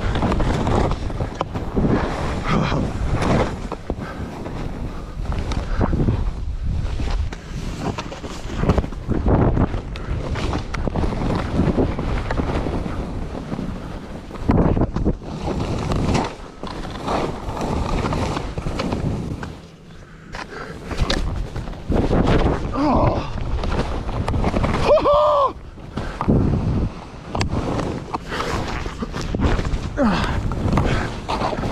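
Skis hissing and scraping over snow through a series of turns, with wind buffeting the microphone. A short pitched sound, perhaps a brief vocal note, comes about 25 seconds in.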